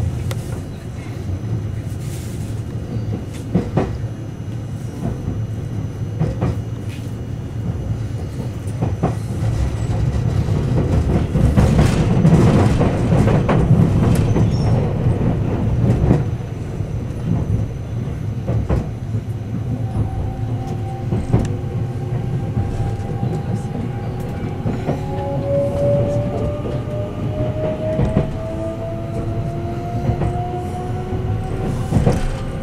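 Inside a moving electric commuter train: a steady rumble of wheels on rails with irregular clicks, louder for a few seconds around the middle. In the last third, a motor whine rises in pitch.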